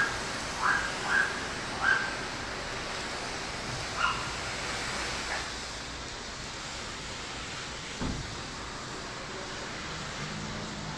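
Garden hose spraying water onto a car in a steady hiss. Over it, a run of short, sharp animal calls repeats about every half second in the first two seconds, with one more around four seconds in, and there is a soft thump about eight seconds in.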